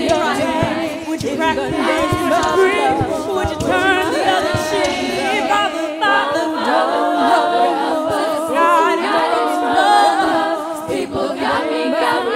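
All-female a cappella group singing in harmony into microphones, with a vocal-percussion beat underneath that stops about halfway through while the voices carry on.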